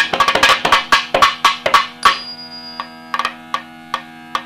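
Music: rapid drum strokes over a steady drone, the drumming thinning out to sparse single strokes about halfway through.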